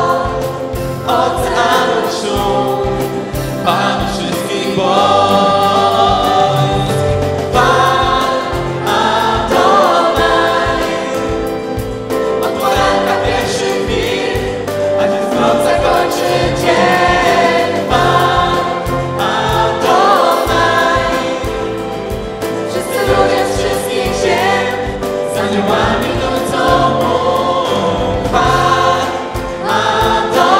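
A group of women singing a Christian worship song together into microphones.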